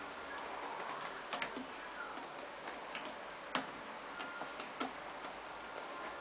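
A cat's claws picking at the sisal rope of a scratching post: irregular sharp clicks and scratches, the sharpest a little past halfway.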